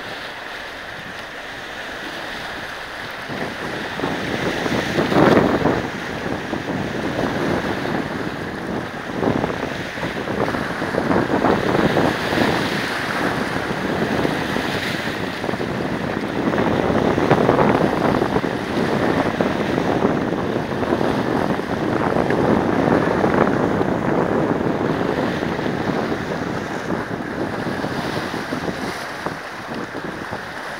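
Small waves breaking and washing among shoreline boulders, splashing in irregular surges every few seconds; the loudest splash comes about five seconds in.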